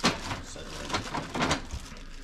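Handling noise: a sharp knock as an object is set down at the start, then a few lighter clicks and taps of things being moved about.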